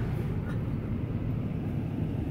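Steady low rumble of a car's engine heard from inside the cabin.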